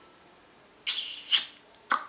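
A person's mouth sounds in a thinking pause: two short breathy hisses about a second in, then a sharp lip click near the end.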